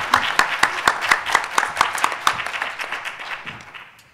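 Audience applauding with dense, irregular claps that thin out and fade away near the end.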